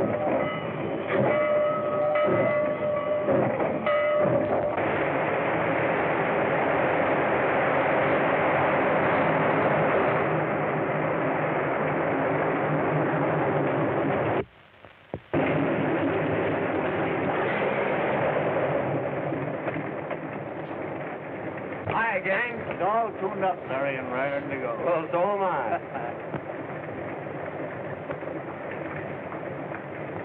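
Steam locomotive whistle sounding a chord of several steady tones for about four seconds, then the steady rushing noise of the locomotive running. This breaks off suddenly about halfway through and is followed by steady noise from an aircraft's radial engine with its propeller turning, which falls lower a few seconds later.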